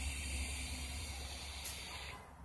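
A long draw on a box-mod vape: a steady hiss of air pulling through the atomizer and heating coil, stopping near the end.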